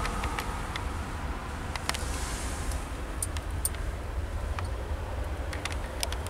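Steady low rumble of a 2012 Ford Escape idling, heard from inside the cabin, with a few faint clicks scattered through it.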